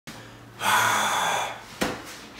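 A man's breathy gasp lasting about a second, followed near the end by a single sharp click.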